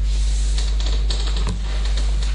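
A steady low hum under scattered light clicks and rustles.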